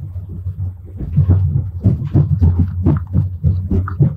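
Steady low rumble of a Strizh high-speed train running, heard inside the carriage, with irregular rustling and handling noises from about a second in as a paper booklet is held and laid down.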